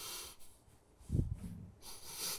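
A person breathes in audibly, then makes a short low vocal sound through the nose about a second in, dropping in pitch, followed by a brief low murmur.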